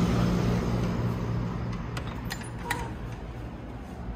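Steady low hum of city street traffic, fading over the first two seconds as the balcony is left for the room. A few light clicks and a sharper tick follow about two to three seconds in.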